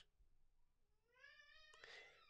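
Near silence, broken in the second half by a faint, distant high cry that rises in pitch and then holds.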